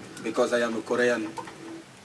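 A voice from an aired video clip making two short sing-song phrases with rising and falling pitch, the tone a little like cooing.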